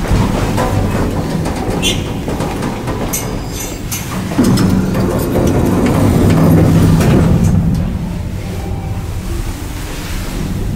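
Rumble and hum inside a 1982 Schindler traction elevator car, with a few sharp clicks in the first half and a louder stretch of hum from about four and a half to eight seconds in.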